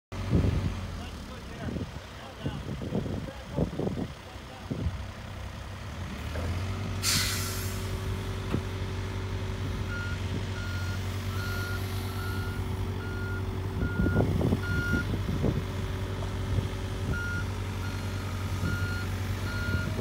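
A diesel engine starts running about six seconds in, with a short hiss of air just after. From about ten seconds a reversing alarm beeps steadily, about every three-quarters of a second, with a short pause before it resumes.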